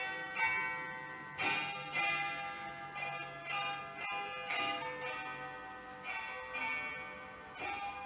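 Hammered dulcimer (Polish cymbały) playing an instrumental interlude of a folk ballad: bright, bell-like struck notes, a new stroke roughly every half-second to second, each left ringing.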